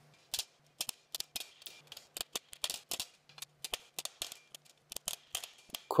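A hammer striking an 18-gauge mild steel strip over a steel ball stake: light, sharp metallic strikes at an irregular pace, a few each second, as the creased comb strip is shaped.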